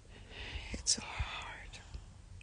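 A crying person's breathy, whispered sob, swelling and fading over about a second, with one short sharp sound near its middle.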